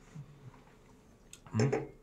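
Quiet room with a light tap, a glass tumbler set down on a wooden barrel top, about a second and a half in. A man's voice, faint at first, then loud near the end.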